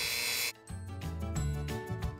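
Dremel rotary tool with a felt buffing wheel running with a steady high whine, cut off abruptly about half a second in. Background music follows.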